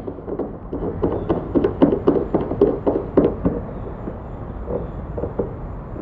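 A run of light taps, knocks and rubbing from fingers handling a short screw-on car antenna mounted on its roof base. The taps are thick for the first three seconds or so and then thin out.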